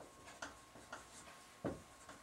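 Faint, irregular ticks and taps of a marker writing on a whiteboard, a few short clicks, the strongest near the end.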